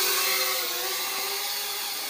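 A SkyCity TKKJ TK112W small folding toy quadcopter's motors and propellers whining steadily in flight, growing slowly fainter as it moves away.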